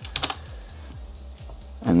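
Typing on a computer keyboard: a quick run of key clicks at the start, then a few fainter ones.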